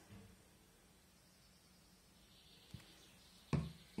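Quiet room tone with faint handling noise as small craft pieces are worked by hand on a table. There is a small tick about two and a half seconds in and a short, soft thud near the end.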